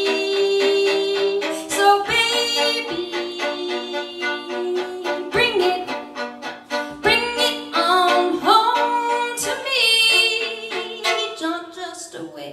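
Solo violin playing an instrumental passage: bowed notes, often two strings sounding at once, with a few slides up into notes.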